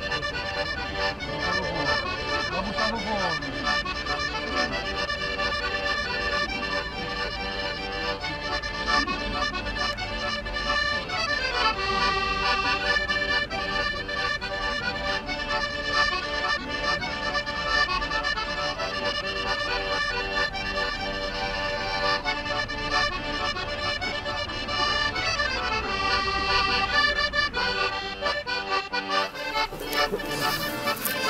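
Background accordion music: sustained reed chords that shift every few seconds.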